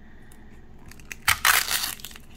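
A short burst of paper crinkling about a second and a half in, as a thin printed wrapper is pulled off a miniature toy inside an opened plastic capsule. There is quieter handling noise before it.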